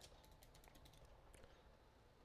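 Faint computer keyboard typing: a quick run of keystrokes, mostly in the first second.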